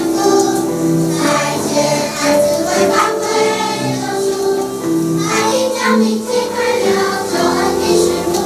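Children's choir singing a worship song, with sustained sung notes.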